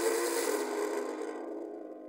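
Bedding and duvet rustling as a person lies back onto a bed. The rustle starts suddenly, is loudest at first and fades out over about a second and a half, over soft, sustained music.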